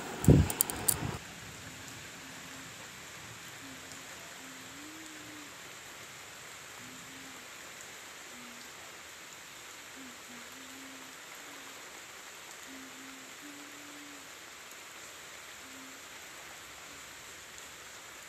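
Steady rain falling outdoors, an even soft hiss. A few loud knocks in the first second.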